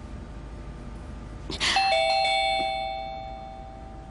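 Two-tone doorbell chime ringing a ding-dong, a higher note then a lower one, about one and a half seconds in, the notes ringing out and fading over about two seconds.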